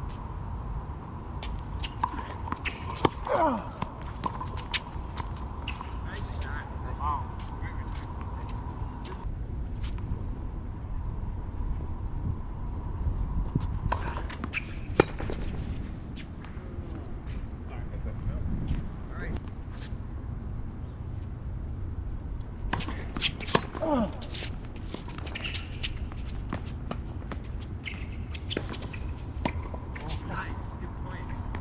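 Tennis balls struck by racquets during doubles points, heard as a run of sharp pops coming in clusters, with an occasional short shouted word. A faint steady high tone runs underneath most of the time.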